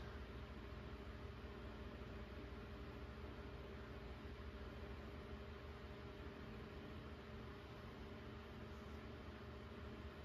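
Faint steady electrical hum with a low hiss from two iMac G3 computers running side by side, their CRT screens on as they load Mac OS 9.1 at startup.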